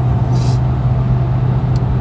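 Steady road noise with a low engine hum, heard inside a Chevy Spark's cabin while it cruises on the highway.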